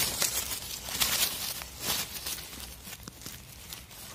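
Rustling and scattered light clicks of dry leaves and twigs on the forest floor being disturbed, fading toward the end.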